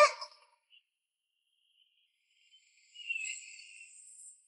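Near silence after a shouted word. About three seconds in, a faint, high, hissing animation sound effect starts and trails away.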